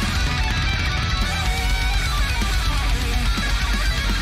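Heavy metal song playing loud and steady: a distorted electric guitar lead runs through quick melodic phrases over drums and bass.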